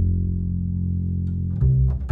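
Veena being played: low plucked notes that ring on after each stroke, with a new note struck about one and a half seconds in.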